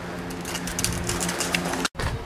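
A steady low hum with faint rustling and clicking handling noise, cut off abruptly near the end.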